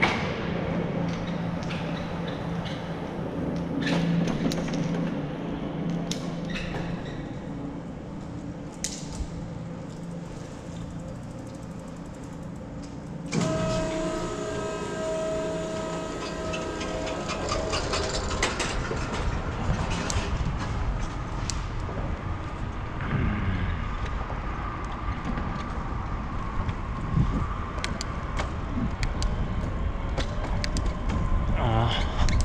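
Bicycle rolling through a reverberant concrete parking garage. About 13 seconds in, the garage door starts opening with a sudden louder rumble and a steady hum that breaks off into pulses over about five seconds. From then on the bicycle rides out onto an asphalt street, with denser tyre and traffic noise.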